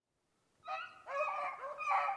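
Beagles yelping and whining in a quick series of short cries that rise and fall, starting about half a second in: the dogs are fired up to run snowshoe hare.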